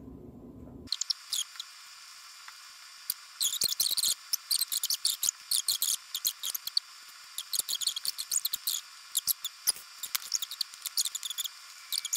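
Close-miked wet chewing and lip-smacking while eating a mouthful of peas and potato: irregular flurries of short squelchy clicks and smacks. The sound is thin, with no low end.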